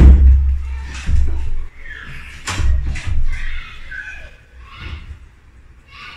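A wooden door being yanked and rattled by its handle while locked, thudding against its frame several times; the first thud is the loudest, and they weaken towards the end.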